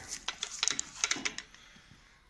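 Handling noise: a quick, irregular run of light clicks and knocks, mostly in the first second and a half.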